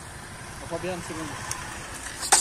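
Small street motorcycle's engine running at low revs as the bike rolls slowly up and comes to a stop.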